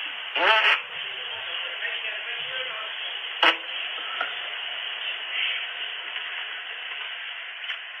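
Steady hiss from a video doorbell camera's narrow-band microphone. A short rising sound comes about half a second in, and a sharp click about three and a half seconds in.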